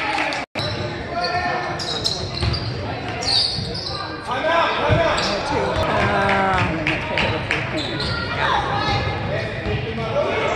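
Basketball dribbled on a hardwood gym floor during a game, mixed with spectators' voices calling out in the echoing gym. The sound cuts out for a moment about half a second in.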